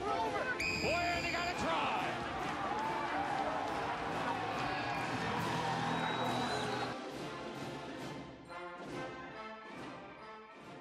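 Crowd cheering and shouting at a rugby try, with a single short blast of a referee's whistle about a second in. The cheering fades after about seven seconds as orchestral music comes in.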